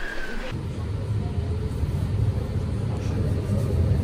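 Steady low rumble of an electric city tram running, heard from inside the passenger cabin. It starts about half a second in, after a brief moment of street sound.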